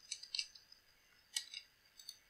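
Faint computer keyboard and mouse clicks: a quick run of keystrokes at the start, then a single click about a second and a half in.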